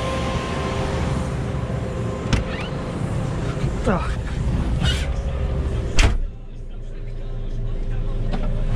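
JCB telehandler's diesel engine idling steadily, with clicks and knocks as someone climbs into the cab. About six seconds in, the cab door shuts with a sharp bang, and the engine suddenly sounds quieter and muffled.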